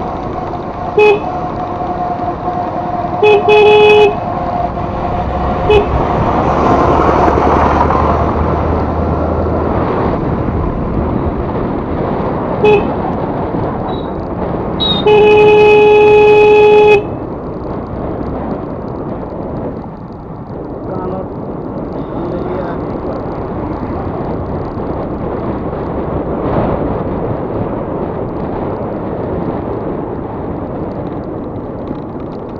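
A scooter horn honked repeatedly over the steady wind and road noise of riding: a short beep about a second in, a quick double beep a little later, two more short beeps, and then one long blast of about two seconds around the middle. The beeps are the loudest sounds.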